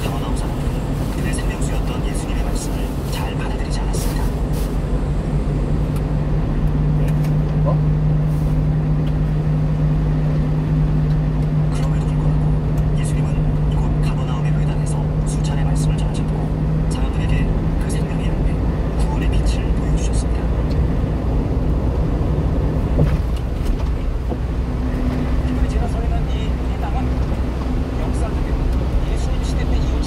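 Steady drone of a truck's engine and tyres on a wet highway, heard from inside the cab, with a held low hum that shifts a little in pitch after about 17 and 23 seconds and scattered light ticks.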